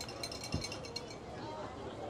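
Faint outdoor ambience with distant voices from players and coaches on the field. A few light clicks are heard near the start and a soft thump about half a second in.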